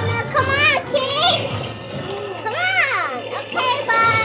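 A young child making high-pitched wordless squeals and sound-effect calls in short bursts that swoop up and down in pitch, over a low steady hum that stops near the end.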